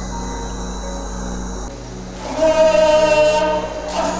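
Singing in long, steady held notes, heard over a sound system, starting about halfway through after a quieter stretch of steady background sound.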